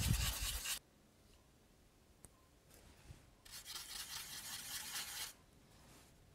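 A paintbrush rubbing and scrubbing on a surface in two scratchy stretches: a short one at the start, and a longer one from about three and a half to five seconds in.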